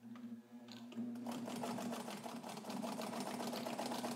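Necchi BU Nova sewing machine stitching through garment-weight leather: its motor hum starts, and about a second in the needle's rapid, even ticking sets in and runs steadily.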